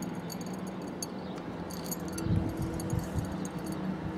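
Small, irregular metallic clicks and ticks from the Reyrolle TJV protection relay's mechanism as its hand-worked lever, geared to the induction disc, moves the trip linkage toward the contacts. A low steady hum runs underneath, with a couple of dull low thumps about two and three seconds in.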